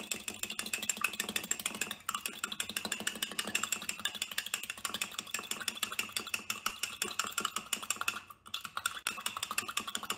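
Fork beating eggs in a mug: rapid, steady clicking of the metal tines against the mug's wall, with a brief break about eight seconds in.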